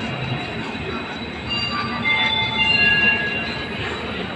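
Express train coaches rolling steadily past. From about a second and a half in to near the end, they give a high-pitched metallic squeal made of several steady tones, loudest around the third second.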